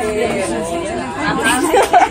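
Several women chattering over one another, with laughter among the voices.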